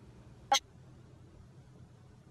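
A single short, sharp clink about half a second in: the glass neck of a hot sauce bottle tapping a metal spoon as sauce is poured onto it.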